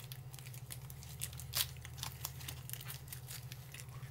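Faint, scattered clicks and crackles of a man chewing a tough pork and buffalo meat stick close to the microphone, with two louder snaps about a second and a half in, over a steady low hum.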